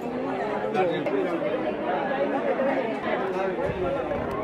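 Many people talking at once in a steady babble of indistinct voices, with no one voice standing out.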